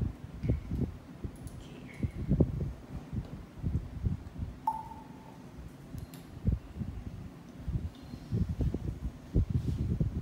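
Soft, irregular knocks and bumps as small glass jars and a dropper bottle are handled on a countertop, with one brief clear ping a little before halfway.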